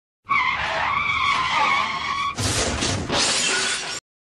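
Vehicle tyres screeching in a skid for about two seconds, then a loud crash with shattering and crunching, the sound of a road accident.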